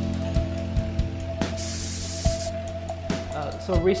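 Aerosol spray-paint can hissing in bursts, the longest lasting about a second from about a second and a half in, over background music.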